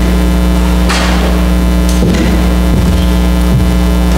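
Steady, loud electrical mains hum with a buzzy stack of overtones, carried on the audio feed, with a faint brief hiss about a second in.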